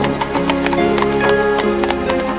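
Instrumental background music: held notes that step from one pitch to the next, with light tapping hits scattered through.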